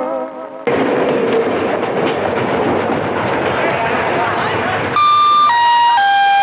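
A dense crowd hubbub, like a busy station hall, then about five seconds in a loud three-note descending electronic chime, the attention chime that comes before a public announcement.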